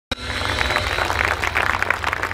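Audience applauding: a dense, steady spread of many hand claps.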